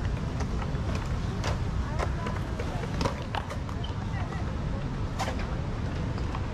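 Skateboards on a concrete skatepark: several sharp clacks of boards striking the concrete, over a steady low rumble, with the chatter of an onlooking crowd.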